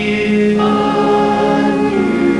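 Pop band's close multi-part vocal harmony holding long sung notes over the band's backing, the chord moving to new notes about half a second in.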